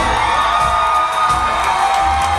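Audience cheering and whooping over live band music that holds long steady notes.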